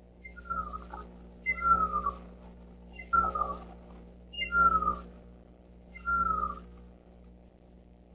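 A bird's whistled call, given five times about a second and a half apart: each a short high note, then a half-second whistle that falls in pitch.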